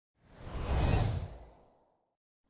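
A swoosh sound effect for a logo reveal: a swell of airy hiss over a deep rumble that rises, peaks about a second in and fades out, lasting just over a second.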